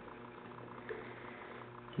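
Faint steady electrical hum, with one soft click about a second in.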